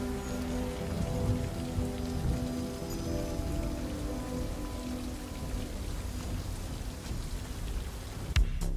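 Steady rain falling, with a low synthesizer drone of held notes underneath that fades out over the first five seconds or so.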